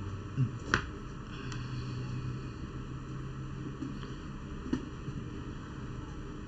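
A few sharp computer-mouse clicks over a steady low background hum. Two clicks come close together near the start and one comes about four and a half seconds in.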